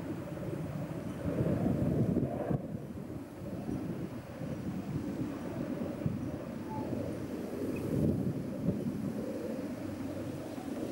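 Wind buffeting the camcorder's microphone: a low rumble that swells about a second in and again near the end.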